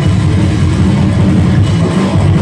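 Metal band playing live: distorted seven-string guitar, bass and drums, loud and steady, with most of the weight in the low end.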